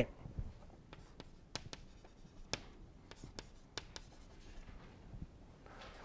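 Chalk writing on a chalkboard: a scattering of faint, irregular taps and short scratches as words are written.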